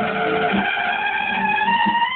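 Trumpet holding one long note over a band's backing music with a regular low beat.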